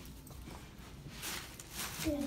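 Light footsteps on a tile floor, a few soft taps in the second half.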